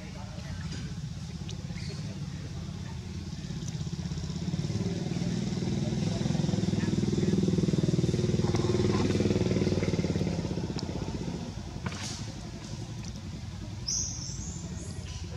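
A motor vehicle engine passing: a low rumble that builds from about four seconds in, is loudest in the middle and fades away near the end.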